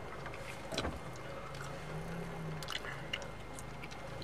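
Car engine and road noise heard from inside the cabin as the car creeps through a parking lot: a steady low rumble with a few faint clicks.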